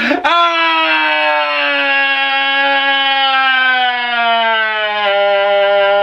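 A man's loud, long wail: one unbroken crying note held for several seconds, its pitch slowly sinking.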